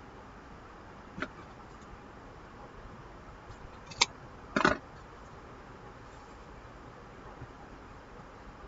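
Scissors snipping off the end of a cotton fabric strip: a sharp click about four seconds in, then a short cut just after. A faint tick comes about a second in.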